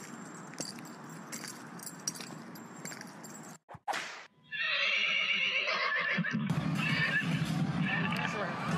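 A horse whinnying in one wavering call about halfway through, after a few seconds of metallic jingling and clicks. Near the end, louder music with crowd noise comes in.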